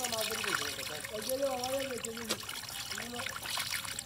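Shallow water trickling through a cut in a mud bank, where stranded fish are flapping, with a person's voice calling or talking indistinctly over it in three short stretches.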